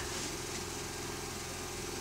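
A steady low background hum, level and unbroken, with the character of an engine or motor running.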